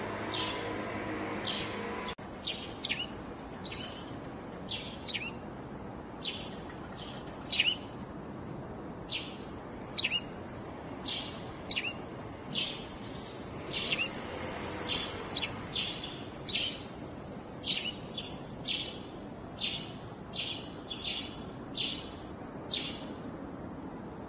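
Bird chirping: a long run of short, high chirps, one or two a second at an uneven pace, over a steady low hiss. It begins about two seconds in, where a steadier low sound cuts off abruptly.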